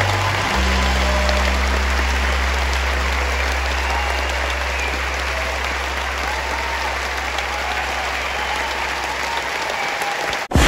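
Concert audience applauding at the end of a song, a dense steady clapping. Under it a held low bass note from the band sustains and stops shortly before the end.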